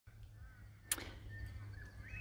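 Faint outdoor bush ambience with a low steady rumble and soft distant bird whistles, broken by a single sharp click about a second in.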